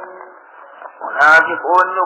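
A man speaking in a Qur'an commentary lecture. After a brief lull, his speech resumes about a second in.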